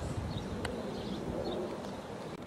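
Quiet outdoor ambience: a few faint, short bird chirps over a low background rumble, with one faint tick about two thirds of a second in.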